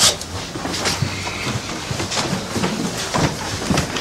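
A sharp bang, then a run of hurried footsteps and knocks as someone moves quickly through the rooms of a house, over a low hum.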